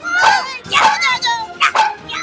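Animated cartoon character vocalizations: a series of short, dog-like barks and yelps mixed with excited cries, over background music.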